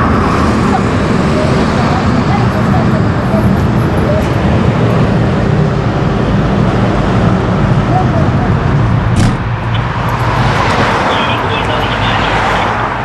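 A large vehicle's engine idling with a steady low rumble, over road traffic noise. A sharp click comes about nine seconds in, and a passing vehicle's rush rises near the end.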